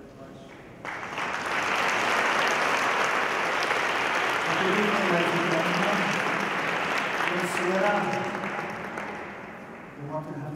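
Audience applauding: the clapping starts suddenly about a second in, holds steady, and fades away over the last two seconds.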